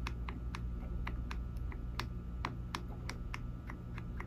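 Light, quick clicks, about four or five a second, from a Springfield Emissary 9 mm 1911-pattern pistol's trigger being pressed over and over while the grip safety is eased in. The trigger is still blocked because the grip safety is not yet fully depressed, a sign of a grip safety that releases late in its travel.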